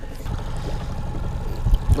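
Water moving along the side of a fishing boat, with wind rumbling on the microphone: a steady rough noise, with a few soft knocks near the end.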